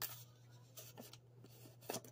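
Faint scraping and light taps of a measuring spoon as sugar is scooped and added to a mug, with a slightly louder scrape near the end. A low steady hum runs underneath.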